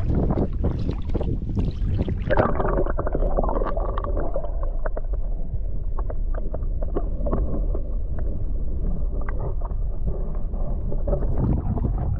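Camera microphone plunged into shallow, clear saltwater. Splashing and wind at first, then about two seconds in it goes under and all turns to a muffled low underwater rumble with scattered small clicks and crackles.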